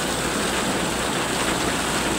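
Heavy rain falling steadily onto a flooded street, with runoff pouring off the edge of an overhead awning and splashing into the water below.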